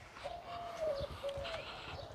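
A bird calling in a few low, level-pitched notes: one held for about half a second, then two short ones.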